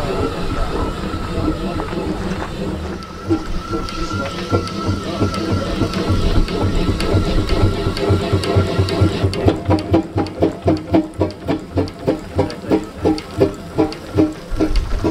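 Steam ploughing engine running, its exhaust chuffing in an even beat that turns sharper and more distinct about ten seconds in, at roughly three beats a second. A steady thin high tone runs underneath.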